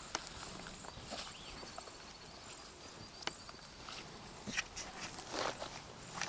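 Footsteps of two people walking through grass, scattered crunches and rustles, with a few faint bird chirps and a short high trill in the background.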